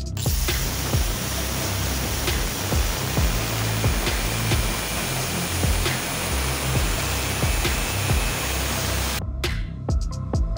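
Angle grinder with a cutting disc slicing lengthwise through a steel pipe: a steady, dense grinding hiss that cuts off shortly before the end, with background music and a low beat beneath it.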